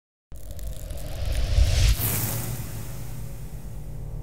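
Cinematic logo-intro sound effect. A deep rumble starts about a third of a second in and swells, peaks with a rising whoosh around two seconds in, then settles into a low, steady drone.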